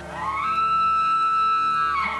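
A bull elk bugling: one long, high, whistle-like call that climbs over the first half-second, holds steady, and falls away near the end, over soft background music.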